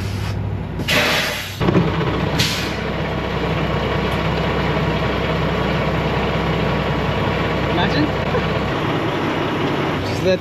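Semi truck's diesel engine idling steadily, with two loud hisses of released air, a longer one about a second in and a short one soon after: the truck's air brakes being set as it is parked.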